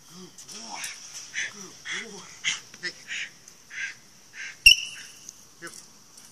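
A dog making short, hoarse vocal bursts and huffs about twice a second. One sharp crack comes about three-quarters of the way through and is the loudest sound.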